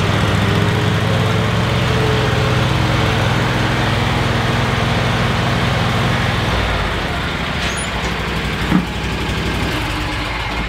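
Riding lawn mower engine running steadily, its note dropping lower about two-thirds of the way through, with a single click near the end.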